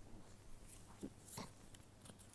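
Quiet handling of paper labels being pressed onto a photo board: a few short, soft rustles and taps. The most distinct comes a little past halfway.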